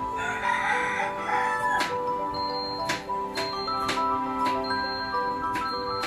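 Background music of held notes with a light ticking beat, with a short noisy sound over it in the first second and a half.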